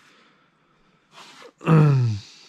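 A man breathes in sharply, then clears his throat with a short voiced grunt that falls in pitch near the end.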